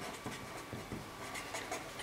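Marker pen writing on paper, a string of short scratching strokes as handwritten letters are formed.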